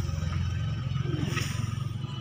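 A steady low rumble, like an engine running nearby.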